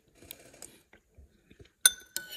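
Metal spoon scraping and stirring through saucy pasta in a bowl, then one sharp, ringing clink of the spoon against the bowl near the end.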